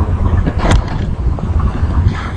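Wind buffeting the microphone of a handheld camera: a loud, gusting low rumble, with one brief sharp sound about two-thirds of a second in.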